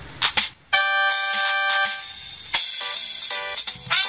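MIDI backing track playing back. After a short click, a held chord comes in just under a second in and changes to shorter, repeated chords about halfway through.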